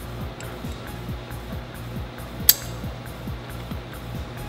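Background music with a steady beat. About two and a half seconds in there is one sharp metallic click as the steel AR-15 bolt is pushed into its bolt carrier.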